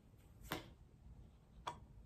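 Two short, sharp clicks of cards as a card is drawn off a handheld deck and laid down in a spread, one about half a second in and one near the end.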